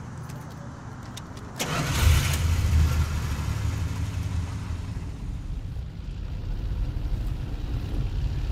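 Keys jangling with a few clicks, then a car engine starting about a second and a half in and running on with a steady low rumble.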